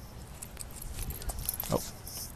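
Small metallic clicks and rustling as scissors snip through a wired earphone cord, over faint outdoor background noise. The clicks thicken in the second half.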